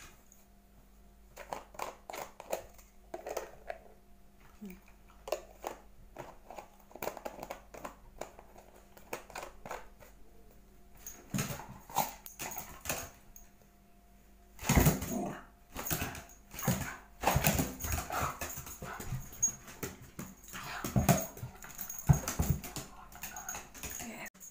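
A small terrier scrambling about on a hardwood floor: clicking claws, taps and scuffles, with clusters of louder thumps and scuffles in the second half as it plays with a rubber treat ball.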